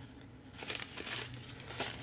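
Sheets of printed paper being handled and turned over, crinkling in a few short rustles that begin about half a second in, with a sharp click near the end.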